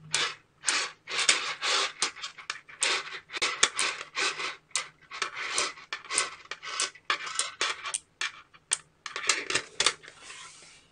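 Small neodymium magnetic balls (buckyballs) clicking and rattling as a strand of them is snapped onto a cluster of balls, ball by ball: quick, irregular clicks and short rattles, several a second.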